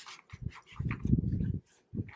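Paper bills rustling and a clear plastic binder pocket crinkling as cash is handled and pushed into it, in irregular crackly bursts that are loudest from about a second in.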